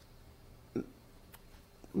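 Quiet room tone in a pause mid-question, broken about three-quarters of a second in by one short voiced sound from the speaker, with a faint click shortly after.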